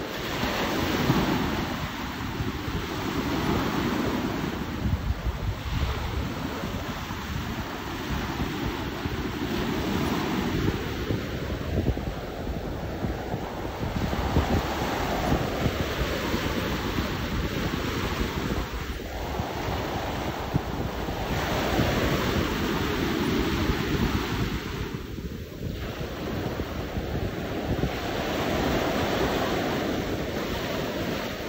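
Small sea waves washing in and breaking at the shoreline, the surf swelling and ebbing every few seconds, with wind rumbling on the microphone.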